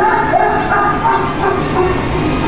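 Recorded laughing of a Laughing Sal funhouse figure in short repeated bursts, over a steady din of background noise.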